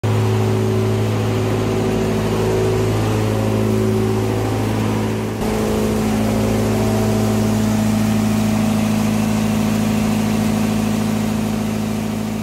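Steady, loud machine hum from motor-driven shop equipment running, with a deep hum and a few higher overtones. The sound breaks briefly about five seconds in.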